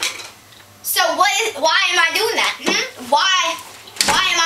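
A child's voice talking, words unclear, from about a second in until shortly before the end.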